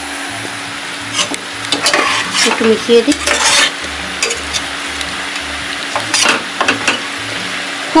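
A spatula stirring thick mutton curry in a pot that is sizzling on the heat, with a few louder scrapes of the utensil against the pot.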